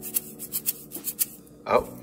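McCormick Grill Mates Montreal Chicken seasoning bottle shaken by hand as a shaker, the dried seasoning rattling inside in a quick run of sharp shakes that stops about a second and a half in.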